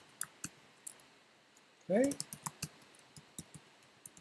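Computer keyboard typing: a string of separate, sharp key clicks at an uneven pace, thinning out for about a second early on before picking up again.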